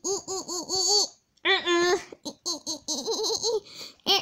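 A young child laughing in runs of quick, high-pitched 'ha-ha' bursts, about five or six a second, with a short break just after the first second before the laughter picks up again.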